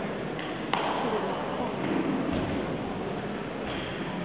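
Echoing background of a gymnastics arena: indistinct voices, with one sharp bang ringing out about a second in and a lighter knock near the end.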